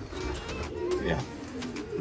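Racing pigeons cooing in the loft, with a man's brief "yeah" over them.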